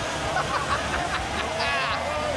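A man laughing and talking over steady arena crowd noise.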